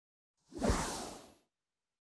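iQIYI logo sting: a single whoosh sound effect about a second long, starting about half a second in, with a low tone falling in pitch underneath, fading out.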